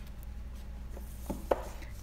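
A hardcover book being pulled from a row of books on a shelf: a couple of light knocks about a second and a half in, over a steady low hum.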